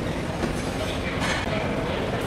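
Steady rumbling background noise of a busy exhibition hall, with indistinct crowd noise and a brief louder burst of noise about a second in.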